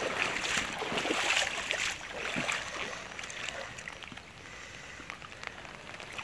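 Shallow floodwater sloshing and splashing as someone wades through it, in repeated surges that are louder for the first two seconds and then lighter.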